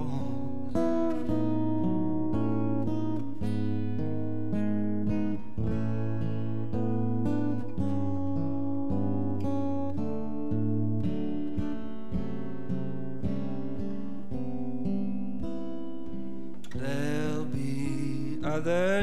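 Acoustic guitar strummed and picked through an instrumental passage of a slow, gentle song. A singing voice comes back in near the end.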